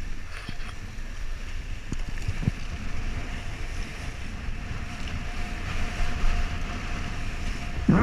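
Wind buffeting the camera microphone over the rush of water under a kiteboard planing across choppy sea, a steady noisy rumble. A faint steady whistle runs underneath.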